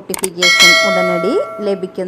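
Notification-bell sound effect from a subscribe-button animation: a click, then a bright bell chime rings about half a second in and fades out over about a second and a half.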